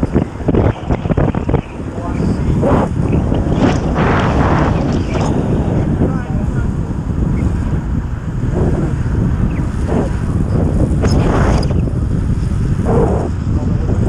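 Wind rushing and buffeting over the microphone of a camera on a track bike racing at about 27 mph, a steady low roar with a few brief louder gusts.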